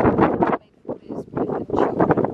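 Wind buffeting the camera microphone in loud gusts, with a short lull about half a second in.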